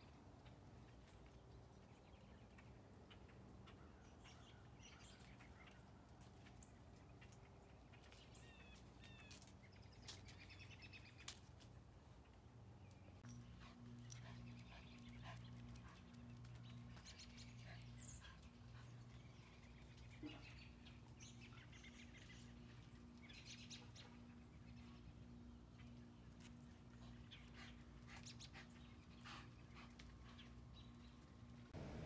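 Near silence: faint outdoor ambience with scattered bird chirps over a low hum. From a little under halfway in, the hum pulses about once a second.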